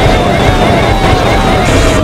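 Many Sparta remixes playing at once over each other: a loud, dense jumble of remix music and chopped cartoon voice samples, with a short falling tone repeating about twice a second.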